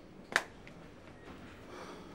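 A single short, sharp click about a third of a second in, then faint room tone.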